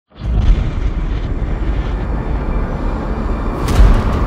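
A loud, deep roaring rumble, heaviest in the low end, that comes in suddenly at the start. Near the end a run of sharp hits begins.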